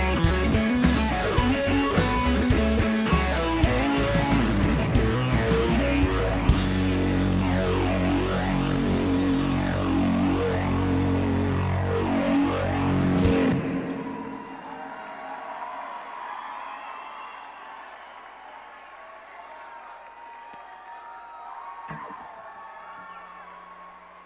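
Live rock band, electric guitar and drums, playing the end of a song and stopping on a final loud hit about 13 seconds in. An arena crowd cheering follows, much quieter and slowly fading.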